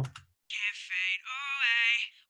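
A sung lead vocal played back through a single soloed EQ band, so only a thin slice of its upper-mid range is heard with no body or low end. The sung notes, with a wavering pitch, start about half a second in and carry the ringy, piercing resonance that is being cut from the vocal.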